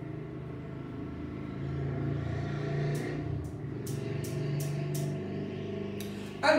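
Low, steady engine hum that swells slightly partway through, with a run of about six short, sharp clicks in the second half.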